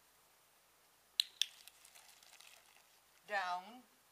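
Two sharp clicks about a quarter second apart, followed by a second or so of faint ticking and rustling, then a short spoken word near the end.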